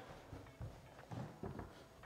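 A few faint footsteps walking away.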